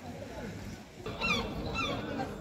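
A bird calls twice, two short cries that fall in pitch, about half a second apart, over a faint background murmur.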